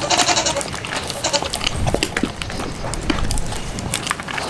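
A goat bleats once, lasting about a second, at the start. Through the rest there are sharp clicks and knocks of a puppy eating from a metal bowl as canned dog food is tipped in.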